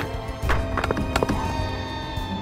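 Orchestral film score with sustained tones, over which comes a quick cluster of sharp knocks or taps about half a second to a second and a half in.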